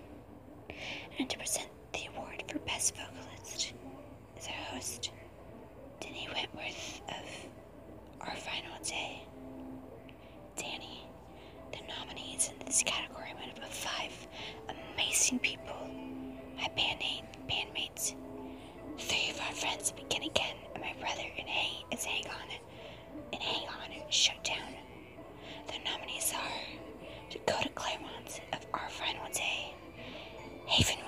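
A person whispering in continuous phrases, with faint background music.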